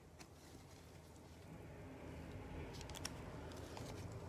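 Faint handling of trading cards and a crinkly foil card-pack wrapper by gloved hands: soft rustling and sliding, with a quick cluster of sharp clicks about three seconds in.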